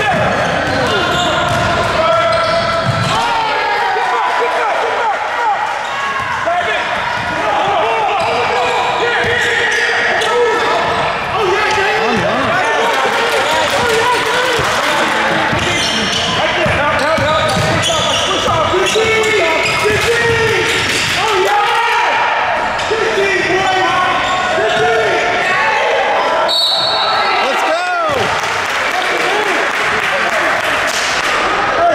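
Basketball game on an indoor court: a ball dribbling and bouncing, sneakers squeaking, and players' and spectators' voices echoing in a large gym. A short referee's whistle sounds near the end.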